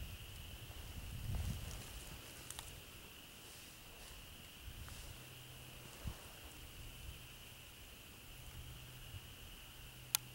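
Faint outdoor ambience with a steady, thin high-pitched whine throughout. There are low handling rumbles about a second in and a few scattered light clicks and rustles as a handheld camera is moved.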